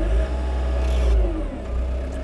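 Mecalac 6MCR excavator's diesel engine revving up as the throttle dial is turned, holding the higher speed for about a second and a half before dropping back.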